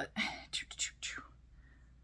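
A woman muttering softly under her breath, a whispery voice for about a second, then quiet room tone.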